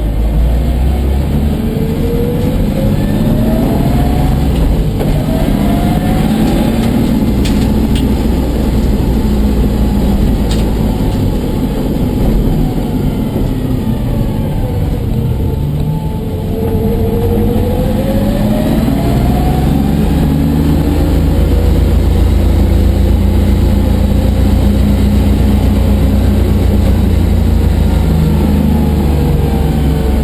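1989 BMW 325i's M20B25 inline-six with a Spec E30 exhaust, heard inside the stripped-out cabin, driven at low speed with the revs rising and dropping several times as it pulls away. Over the last ten seconds it settles into a steady drone.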